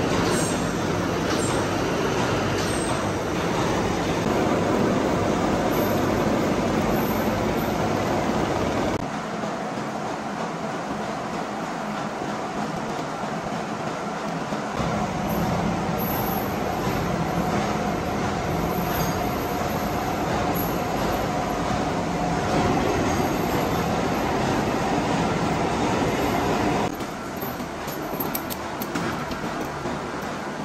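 Machine-shop cutting noise: a gear-cutting machine's pinion-type cutter working the teeth of a steel helical gear under flowing cutting oil, a loud steady churning grind. About nine seconds in it changes to a lathe turning a steel cylinder, a steadier grind with a faint whine, and near the end to quieter shop noise with a few clicks.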